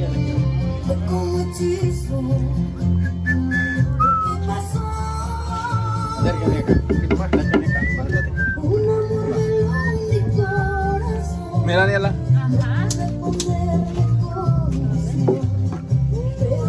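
Background music with a steady, repeating bass line and a melody over it.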